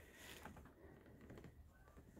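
Near silence, with only faint scattered handling noise.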